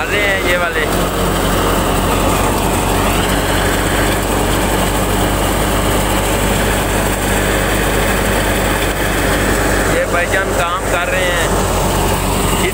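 Tractor-driven wheat thresher running steadily at working speed: a constant engine and machine hum with steady tones.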